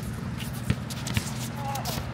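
Basketball dribbled on an outdoor hard court: two sharp bounces about half a second apart, roughly a second in, among the scuffs and squeaks of sneakers, over a steady low hum.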